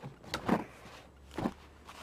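Cardboard packaging being handled: a few brief scrapes and knocks as the box is lifted out of its shipping carton.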